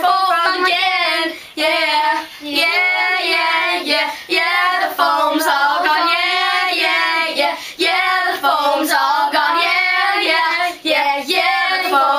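Several young girls singing together, in phrases broken by brief pauses.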